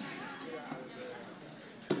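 Indistinct voices of coaches and spectators calling out in an echoing gymnasium, with a sharp knock near the end.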